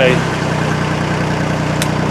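Narrowboat's diesel engine running steadily, throttled back to slow the boat, its hum dropping a little just after the start. A brief click near the end.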